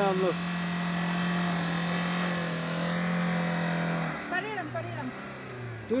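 Maruti Suzuki Vitara Brezza SUV's engine held at steady high revs as it drives through deep mud, the revs dropping about four seconds in.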